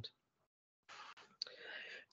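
Near silence in a pause of speech, then a faint mouth click and a soft in-breath near the end.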